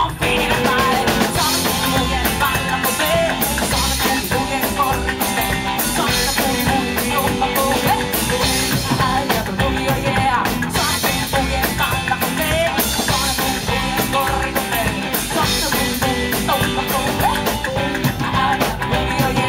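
Live rockabilly band playing: a woman singing lead over hollow-body electric guitar, upright double bass and drums, with a steady driving beat.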